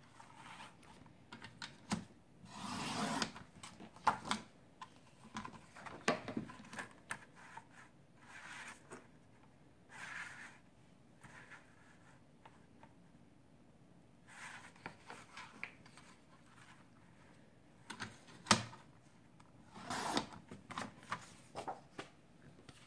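Fiskars sliding paper trimmer cutting scrapbook paper: short rasps of the blade carriage running along the rail and of paper sliding on the bed, with rustling and plastic clicks from the trimmer arm, and one sharp click late on.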